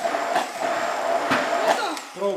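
Braun immersion blender running steadily, puréeing fresh strawberries and raspberries in a tall plastic beaker, with a thin high motor whine; it stops near the end.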